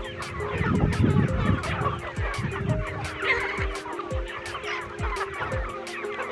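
A flock of village chickens clucking as they crowd together, over background music with a steady beat of about two beats a second.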